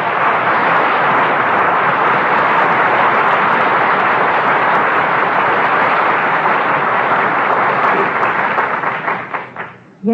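Studio audience applauding, thinning into a few scattered claps and dying away near the end.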